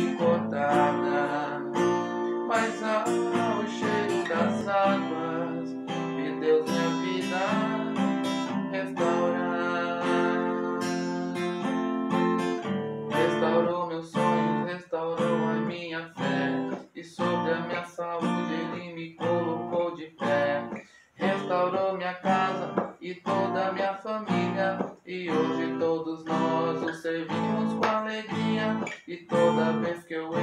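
Steel-string acoustic guitar strummed through the song's chords in F, moving from B♭ to C and D minor. The strumming rings on steadily at first, then from about halfway through turns to shorter, choppier down-strokes with brief gaps between them.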